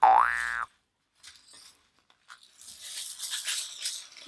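A cartoon 'boing' sound effect, its pitch rising and then falling back, lasting about two-thirds of a second and cutting off abruptly. From about two seconds in, softer rustling as hands knead a fabric beanbag filled with plastic pellets.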